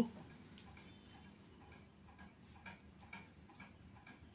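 Quiet room tone with faint, scattered short ticks a few times a second.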